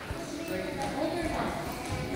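Indistinct chatter of a roomful of children and adults in a large hall, with a few scattered knocks.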